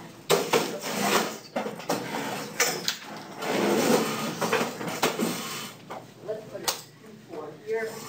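Classroom bustle: students talking in the background, with several sharp knocks and clatters scattered through it.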